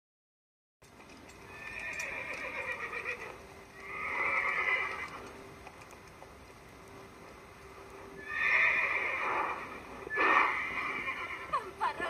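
A horse whinnying, the voice of the winged horse Pegasus: four calls, two close together early on and two more from about eight seconds in.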